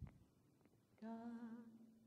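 A single hummed note, held for about a second with a slight waver, starting about a second in. It is a starting pitch given for a hymn to be sung a cappella. A faint click comes at the very start.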